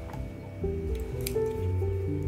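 Soft piano background music, with a few short taps and scratches of a stylus on a tablet's glass screen, most of them about a second in.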